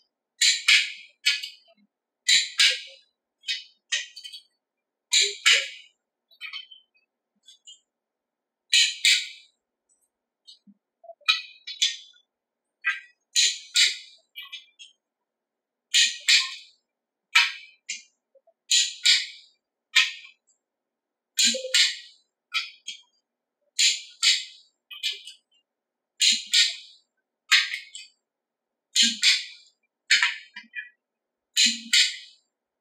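Torque wrench ratcheting and clicking on the ARP head stud nuts of a 351 Windsor as they are brought to a final 110 ft-lb: repeated short bursts of sharp metallic clicks, about one or two a second, with brief pauses between.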